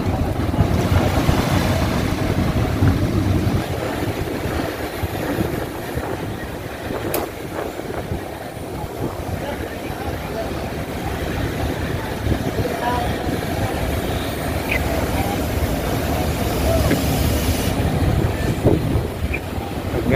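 Steady low rumble of heavy machinery with outdoor noise and a single sharp click about seven seconds in.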